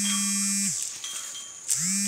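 A man's long, drawn-out call held at one pitch for about a second, a handler's command to a tusker elephant, then it drops away; a steady high buzz of insects runs underneath.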